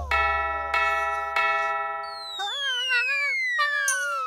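Cartoon clock bell striking three times, each stroke about two-thirds of a second apart and ringing on. Then a long falling slide-whistle glide, with a wavering high-pitched cartoon cry over it, as the startled mouse tumbles.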